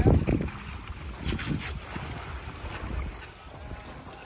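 Wind buffeting the microphone, with water splashing as wading boots step through the shallows while a seine net is dragged ashore.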